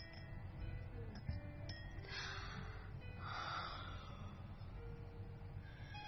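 A woman's breathing: a breathy intake about two seconds in, followed by a softer breath out, over faint background music.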